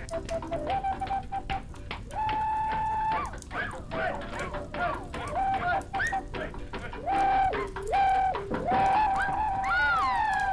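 Vintage cartoon soundtrack music: a high melody of held notes, several bending upward at their ends, over a band accompaniment, with a steady crackle of old film sound.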